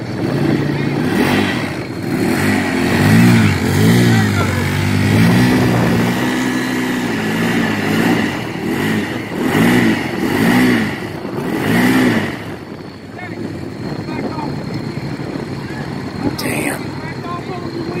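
Side-by-side UTV engine revving in repeated bursts, the pitch climbing and falling again and again while the machine is stuck in a mud hole. The revving stops about twelve seconds in and settles to a lower steady sound. A brief sharp click comes near the end.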